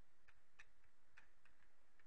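A few faint, irregular ticks of a stylus tip tapping on a tablet screen while a word is handwritten, over quiet room tone.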